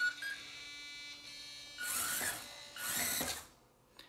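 A couple of short electronic beeps, a faint steady whine, then two short whirring bursts from the small electric motors and gearing of a radio-controlled Bruder CAT telehandler toy conversion, run from its transmitter in a function test.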